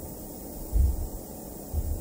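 Small gas torch burning with a steady hiss, with two brief low rumbles about a second apart.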